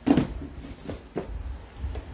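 Handling noise: a few short knocks and rustles as things are picked up and moved, over a low rumble.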